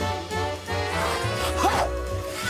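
Cartoon background music over a repeating bass line, with a brief gliding sound effect near the end.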